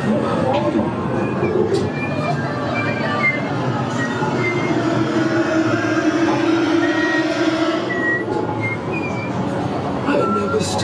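Loud, continuous haunted-maze soundscape: a dense rumble with a held low tone in the middle and short high tones scattered over it.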